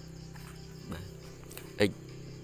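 One short sharp knock near the end, as a plastic protractor is set down on the desk, over a steady low hum.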